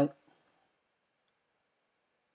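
The end of a spoken phrase, then near silence with a single faint click about a second in.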